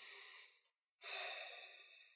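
A man's audible breathing: a short breath, then about a second in a longer, airy exhale that fades away.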